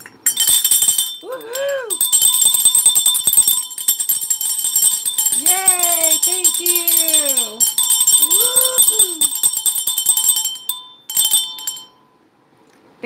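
A set of jingle bells shaken hard for about ten seconds: a dense, bright jingling that breaks off briefly about a second in and stops near the end. Wordless vocal calls sound over the bells.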